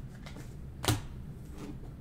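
Trading cards being handled on a table: faint light clicks with one sharp snap about a second in.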